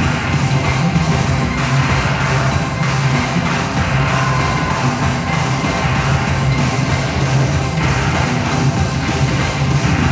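Live experimental electronic music played from a laptop and an M-Audio keyboard controller: a loud, dense texture over a steady, pulsing bass.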